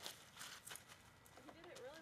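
Gift wrapping paper crackling and rustling in short sharp bursts as a dog rips and pulls at it. A person's voice, wavering in pitch, comes in near the end.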